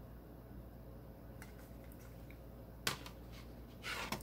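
Quiet room hum broken by a sharp plastic click about three seconds in and a few more clicks near the end: a CD jewel case being handled.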